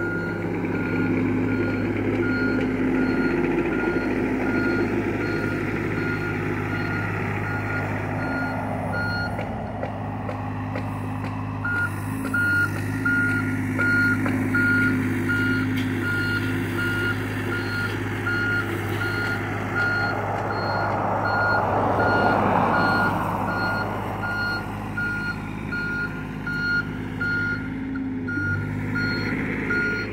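John Deere 35G mini excavator's diesel engine running with its warning alarm beeping steadily, about two beeps a second, pausing briefly about ten seconds in. A rush of noise swells and fades a little past the twenty-second mark.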